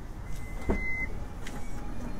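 Compact taxi idling close by: a steady low engine rumble, with a thin high tone for about the first half and a couple of faint clicks.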